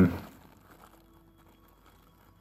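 A spoken "um" trails off at the very start, then near silence with faint rustling as the plastic-wrapped microscope is handled.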